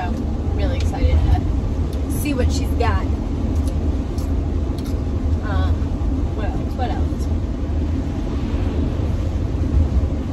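Steady low road and engine rumble heard inside the cabin of a moving van.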